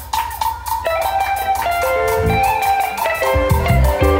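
Electric guitar playing a lead line over a drum kit. Low bass notes come in about two seconds in, and the full band joins just before the end.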